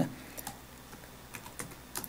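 Computer keyboard typing: a few light keystrokes, spread out and bunched mostly in the second half.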